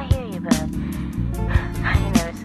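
Intro of an R&B song: a programmed drum beat with a sharp hit about every half second over a steady bass line. Short sliding, voice-like sounds come at the start and again near the end.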